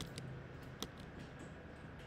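A few light clicks of computer keyboard keys, the loudest a little under a second in, over a low steady hum.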